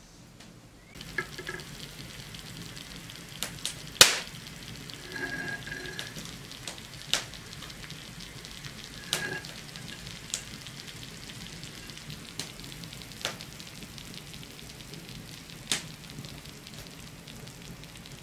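A hot iron salamander held over a sugar-dusted chocolate tart, melting and toasting the sugar on top: a steady sizzle with scattered sharp crackles, the loudest about four seconds in.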